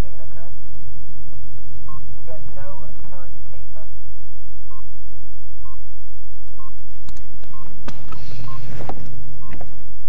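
A short electronic beep repeating about once a second, starting about two seconds in, over a steady low hum. A few sharp clicks and knocks come near the end.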